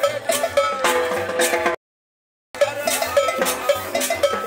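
Live cumbia band playing a steady dance beat on drum kit, congas and metal shaker over upright bass and sustained pitched notes. A little under two seconds in the sound cuts out completely for under a second, then the music carries on.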